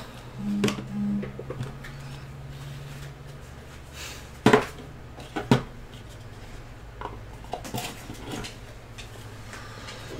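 Handling of cardboard trading-card boxes and a stack of cards: light rustles and clicks, with two sharper knocks near the middle, about a second apart, as boxes are set down and opened.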